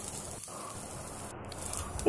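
Grated coconut and shallots roasting in a nonstick pan, a faint, steady sizzling hiss.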